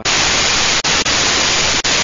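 Loud burst of static hiss that replaces the programme sound; it starts and stops abruptly and cuts out briefly three times. It is a corrupted stretch of the broadcast recording, a signal glitch.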